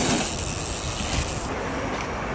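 Wind buffeting an outdoor camera microphone: a gusty low rumble under a steady hiss, with no tone or rhythm. The hiss drops away about one and a half seconds in.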